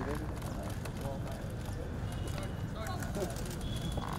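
Outdoor kick-about on grass: scattered shouts and voice fragments from the players and onlookers, with many short sharp clicks and taps at irregular times over a low rumble.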